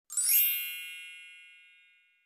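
A single bright chime sound effect with a sparkling shimmer on top, ringing once and fading out over about a second and a half.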